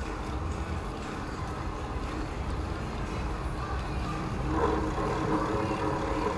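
Outdoor city ambience: a low rumble of traffic and wind noise. About four and a half seconds in, a steady hum made of several pitches comes in and grows louder.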